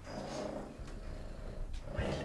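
Domestic cat purring softly while being stroked.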